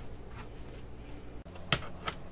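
A single sharp click near the end as a ratchet wrench is set on a screw of a sump pump lid, over a low, steady hum.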